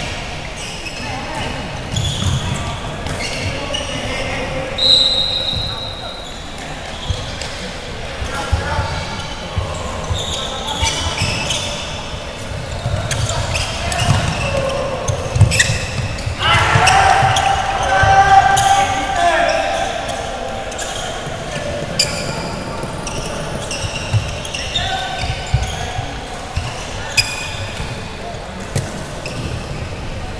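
Floorball game in a large echoing sports hall: repeated sharp clacks of sticks and the plastic ball, with players' shouts and calls. The shouting swells loudest about 17 seconds in as play crowds the goal.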